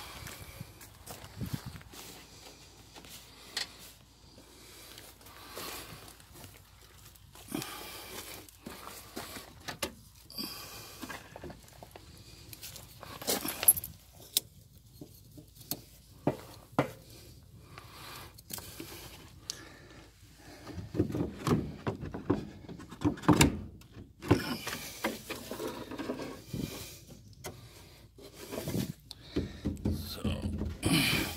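Wooden boards and wood chips being handled: irregular knocks, clatters and scraping, growing busier and more frequent near the end.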